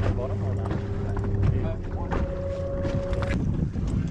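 Wind on the microphone over a low steady hum, with faint voices in the background; a thin steady tone sounds through the first second and a half and another, higher one for about a second in the middle.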